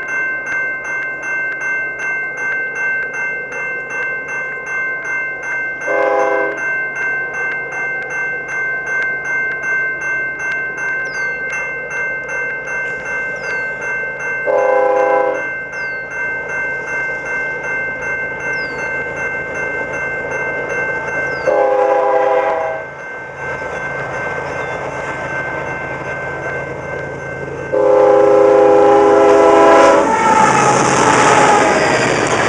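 Level-crossing bell ringing rapidly and steadily while an approaching Canadian Pacific freight locomotive sounds its air horn four times for the crossing, the last blast held until it arrives. At the very end the locomotive passes close with a loud rush of engine and wheel noise.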